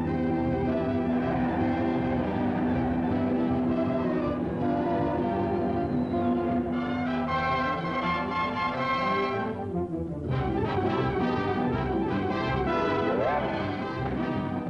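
Orchestral cartoon score led by brass: a long held chord, then a brighter, fuller brass passage after a short break about ten seconds in.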